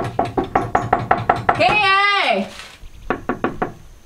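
Knuckles rapping fast on a weathered wooden plank door: a quick run of knocks for the first second and a half, then a second, shorter run near the end. A voice calls out loudly between the two runs.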